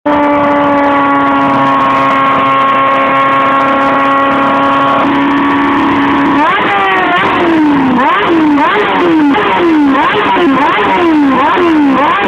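Sport motorcycle engine held at a steady high rev. From about six seconds in it is blipped over and over, each rev rising sharply and falling back, a little more than once a second. It is being run hard enough while standing that its exhaust headers glow red hot.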